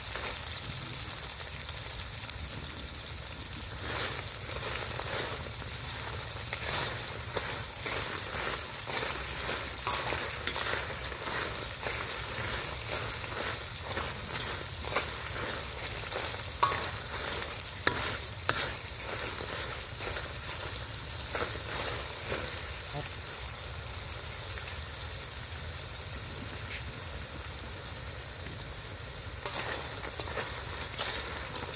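Dung beetles frying in a hot metal wok, a steady high sizzle, with a metal spatula scraping and clicking against the wok as they are stirred; the sharpest knocks come a little past halfway.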